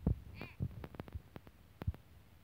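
A baby's short, high-pitched squeal about half a second in, among several soft low thumps.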